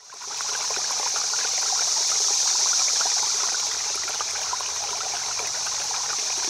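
Running water of a stream, a steady rushing hiss with small splashes and trickles through it, fading in over the first half second.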